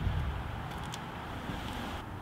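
Steady low rumble and hiss of wind on the microphone, with a few faint clicks.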